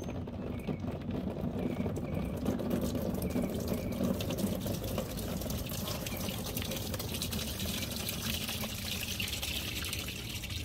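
Gel water beads pouring into a plastic tub: a steady, wet pattering of many small clicks, growing brighter about four seconds in.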